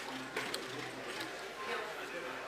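Casino chips clicking as they are set down on a roulette table's betting layout: a few sharp clicks over low background chatter.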